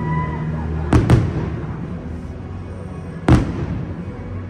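Aerial firework shells exploding: two sharp bangs in quick succession about a second in, then a single bang past three seconds, each with a short echoing tail. The show's music plays underneath.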